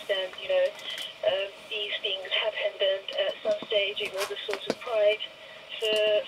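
A high-pitched voice talking in the background, thin and muffled like a radio or TV, with a few light clicks scattered through it.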